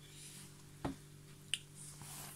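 Two short clicks, one a little under a second in and a lighter, higher one about a second and a half in, as pieces of crushed chocolate are dropped by hand onto the cake and plate, over a faint low steady hum.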